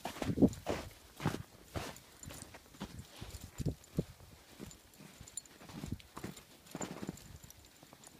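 Footsteps crunching through deep snow, about two steps a second in an uneven rhythm, loudest about half a second in.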